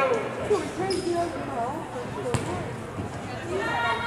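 Players' voices calling out across a gymnasium, with a couple of sharp thuds of a volleyball bouncing on the hardwood floor, about half a second in and just past two seconds.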